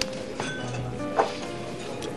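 Soft background music with the clink of dishes and cutlery: a few light clinks, the clearest about a second in.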